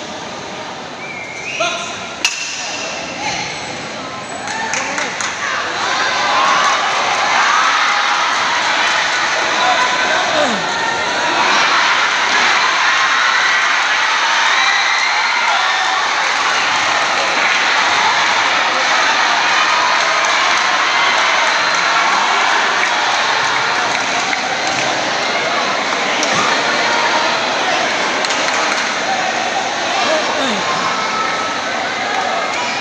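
Crowd of spectators shouting and cheering in a large gymnasium during a boxing bout. The crowd swells about five seconds in and stays loud, with a single sharp knock about two seconds in.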